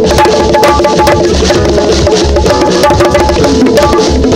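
LP City bongos struck by hand close up in quick strokes, playing along with a live band whose pulsing bass and held pitched notes sound underneath.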